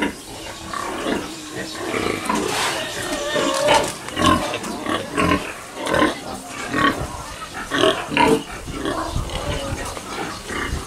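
Domestic pigs grunting in their pens, short calls following one another every second or so.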